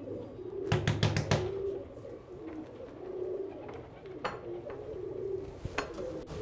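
Domestic pigeons cooing repeatedly, with a quick series of about five knocks on a wooden door about a second in.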